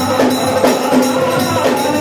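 Ghumat aarti music: ghumat earthen-pot drums and a small drum played in a fast, even beat, with small hand cymbals jingling and a group of voices singing over them.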